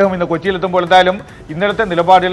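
A man speaking Malayalam in a news broadcast: only speech.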